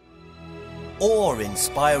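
Soft background music with held notes fades in from near silence, and a man's voice begins speaking over it about halfway through.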